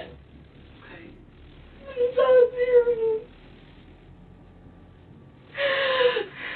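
A woman sobbing: two drawn-out wailing cries that fall in pitch, the first about two seconds in and lasting over a second, the second near the end.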